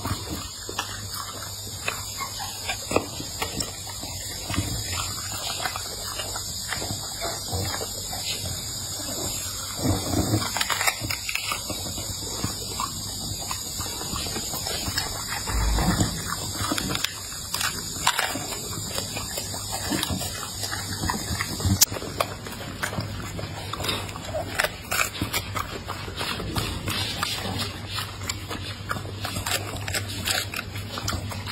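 A pit bull-type dog eating: open-mouthed chewing and smacking, with a steady run of wet, irregular clicks and slurps.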